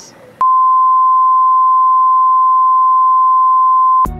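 A loud, steady 1 kHz test tone, the line-up tone that goes with colour bars. It comes in sharply about half a second in and holds one unchanging pitch.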